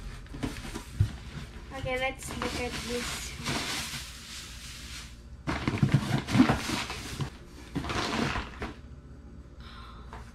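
Shredded paper filler and cardboard rustling and crinkling as hands dig through a gift box, in two long stretches, with small knocks of the box flaps. A child makes a short pitched vocal sound about two seconds in.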